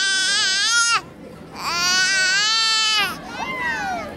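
An infant crying: two long, high wails with a short break between them, the second trailing off into quieter falling whimpers near the end.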